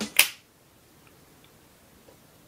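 A single sharp click, about a quarter of a second in, from a button being pressed on a GoPro Volta battery grip.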